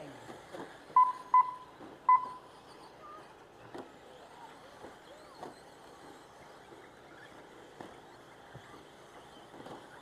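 Three short electronic beeps, two in quick succession about a second in and a third just after two seconds, from the race's lap-counting timing system as radio-controlled short course trucks cross the line. Then the faint sound of the RC trucks running on the dirt track.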